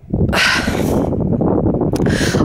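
Wind buffeting the camera's microphone: a loud, rough rushing rumble that starts suddenly just after the beginning and carries on, strongest in the first second.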